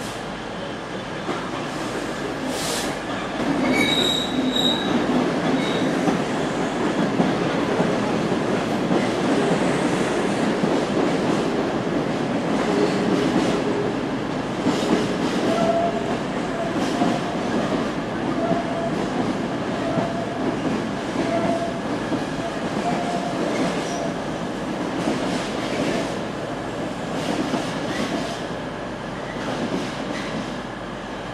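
Freight train hauled by a Class 66 diesel locomotive passing through: wagon wheels clatter over rail joints and squeal, loudest from about four seconds in, with a steady squealing tone through the middle.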